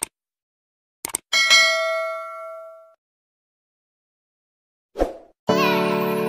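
Subscribe-button animation sound effect: a click, then a quick double click followed by a notification-bell ding that rings out and fades over about a second and a half. Near the end comes a short soft thump, then piano music begins.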